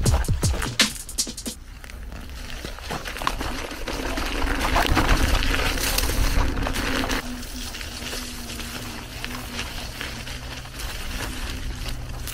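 A drum-and-bass beat ends about a second and a half in, giving way to the noise of an Inmotion V11 electric unicycle riding a dirt trail: wind rushing over the microphone and the tyre rolling over the ground, with a faint steady hum, loudest in the middle.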